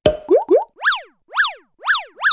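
Cartoon-style sound effects of an animated logo sting: a sharp pop, two short upward swoops, then a run of quick chirps that each swoop up and back down in pitch, about two a second.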